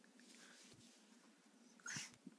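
Near silence over a faint steady hum; just before the end, a dog gives one short, high-pitched whine.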